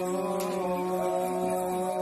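Ritual chanting: a single voice holding one long, steady note.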